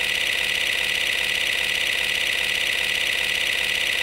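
A steady, unchanging hissing buzz, strongest in the upper-middle pitch range, with a faint fast flutter. It stops suddenly at the end.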